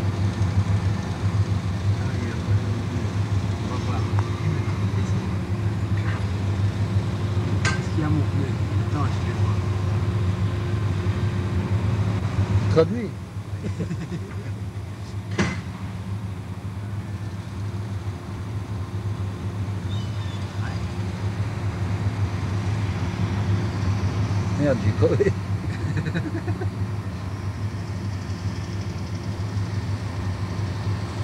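Heavy open-pit mining machinery's diesel engines running with a steady low drone, with a few sharp knocks. The level drops suddenly about halfway through.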